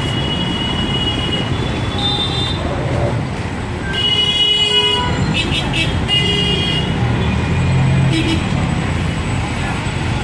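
Busy city street traffic: vehicle engines running with repeated horn honks, a longer blast about four seconds in followed by a quick run of short toots, over the chatter of passers-by.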